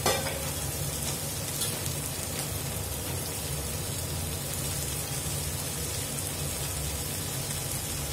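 Sliced cabbage and onion frying in oil in a stainless steel kadai: a steady sizzle, with one brief knock right at the start.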